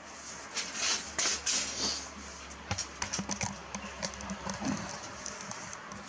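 Handling noise on the camera's microphone: irregular clicks and rustling as the camera is held and moved, in two clusters, one in the first two seconds and another from about three to five seconds in.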